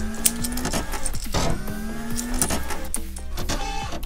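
Background music with long held tones, over irregular plastic clicks and snaps as a small Legion-class Optimus Prime Transformers figure is twisted and folded from truck into robot mode.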